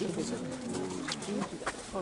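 Many people talking at once, overlapping low voices in a murmur, with a few sharp clicks.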